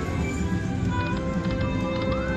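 Buffalo-themed video slot machine playing its free-games bonus music: steady electronic tones, with a few light ticks about a second in as the reels spin and land.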